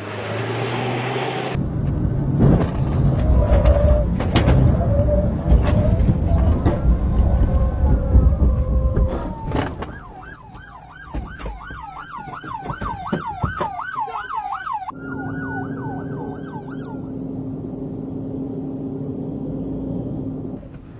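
Loud low noise with several sharp knocks. Then, about halfway through, a police car siren in fast yelp, rising and falling about four times a second with a slower wail over it. It cuts off suddenly after about five seconds and leaves a steady hum.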